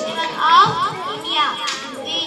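Many young children's high voices talking and calling out at once, overlapping into steady chatter.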